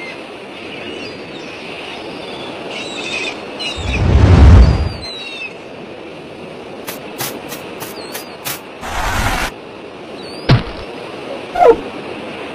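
Animated-cartoon sound effects: a heavy, low rumbling thud about four seconds in, the loudest sound, then a quick run of sharp clicks, a short noisy burst and a few short knocks near the end. Under it all lies a steady background hiss with faint bird-like chirps.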